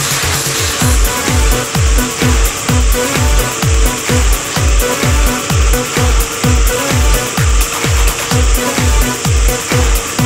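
Background electronic dance music with a steady kick drum beating a little over twice a second.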